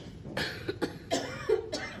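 A man coughing a few short times into a handheld microphone.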